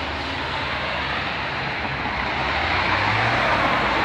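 Road traffic: steady vehicle engine and tyre noise, growing slowly louder toward the end.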